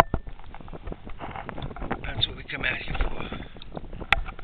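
A man's voice talking indistinctly close to the microphone, with a few light handling knocks.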